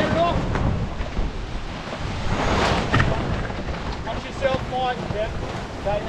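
Water rushing and splashing past the hull of a Fareast 28R keelboat sailing fast downwind under spinnaker, with heavy wind buffeting on the microphone. The rush swells about two and a half seconds in.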